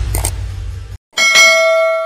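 Animated-outro sound effects: a loud, low whoosh that cuts off about a second in, then a single bright bell ding that rings on and fades. This is the notification-bell effect of a subscribe-button animation.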